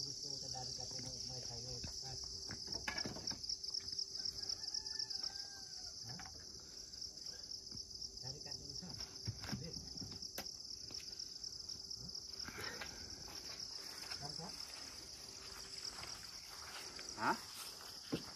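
A steady, high-pitched chorus of insects runs throughout. Over it come scattered knocks and clatters of wooden pieces being picked up from a woodpile, with a louder knock near the end.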